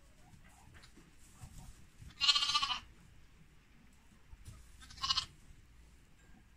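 Young lamb bleating twice: a wavering call of about half a second, then a shorter one about three seconds later.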